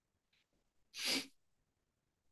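A single short, sharp burst of breath noise from a person, about a second in.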